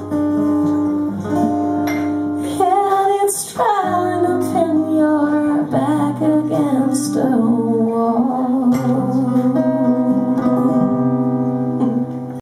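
A woman singing a slow song live with acoustic guitar accompaniment, holding long notes, with a long wavering note through the second half.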